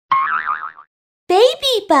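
Logo sting: a short wobbling boing sound effect with a warbling pitch. Then a high voice calls out the brand name in two syllables, each gliding in pitch.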